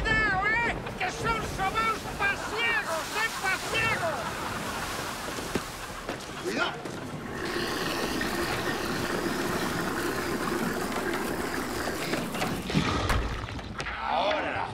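Storm sound effect of wind and waves, with a string of high, arching cries over it for the first few seconds; the wind and surf then carry on steadily.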